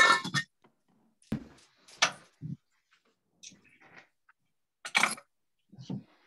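Scattered short knocks and scrapes of kitchen handling at the stove and counter, about eight separate brief sounds with quiet gaps between them.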